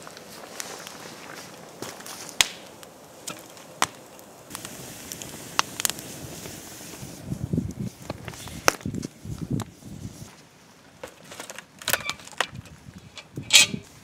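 Wood campfire crackling, with sharp pops every second or two and a cluster of louder pops near the end. A few dull low thuds come in the middle.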